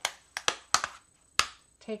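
Thin metal cutting dies clicking and tapping as they are handled and set down on a sheet of paper: about six short, sharp clicks spread through the two seconds.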